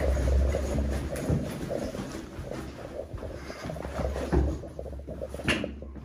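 Footsteps climbing a stairwell, with the scuffing and low rumble of a handheld camera being carried, and a sharp click or knock near the end.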